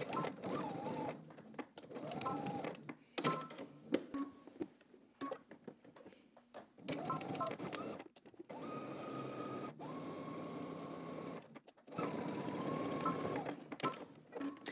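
Electric domestic sewing machine stitching a seam in several short runs, its motor whine rising as each run starts, with brief stops and sharp clicks between the runs.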